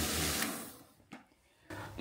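Steady hum of an electric pressure washer's motor, which fades out about half a second in, leaving near silence with one faint tick.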